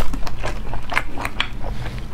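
Close-miked chewing of cooked snail meat: an irregular run of short, wet clicks and smacks, the sharpest a little after the first second, over a steady low hum.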